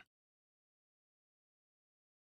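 Silence: the audio track is blank.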